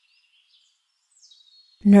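Faint birdsong: short high chirps and whistled glides, quiet under an otherwise silent pause.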